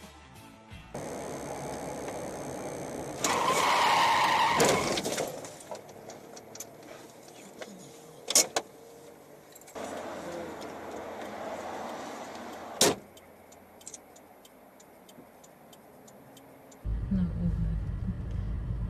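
Car and road noise in dashcam recordings joined by hard cuts. A loud stretch a few seconds in carries a steady high tone, and two sharp knocks come about four seconds apart in the middle.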